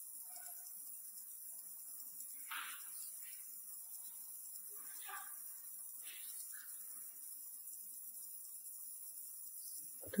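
Faint water drips falling in an underground quarry tunnel, about half a dozen short drops at irregular intervals, echoing off the stone, over a steady hiss.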